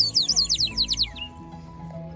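Small bird-shaped toy whistle blown in a quick warbling run of high, falling chirps for about the first second, then stopping.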